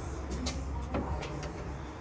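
A few faint clicks and taps over a low steady hum.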